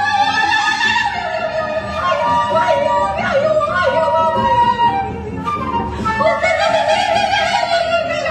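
Free jazz improvisation: two woodwinds play wavering, gliding lines that weave around each other over a double bass. The horns ease off briefly a little past the middle, then come back in.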